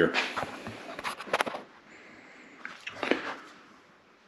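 Faint handling noise from close-up work on the outboard: a quick run of sharp clicks a little over a second in, and a soft knock near three seconds, over quiet room tone.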